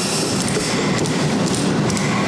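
Steady, indistinct meeting-room noise, like shuffling and movement in a seated crowd, with scattered light knocks and clicks.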